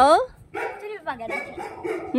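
A Shih Tzu's high, wavering whine that falls away just after the start, followed by quieter voices talking.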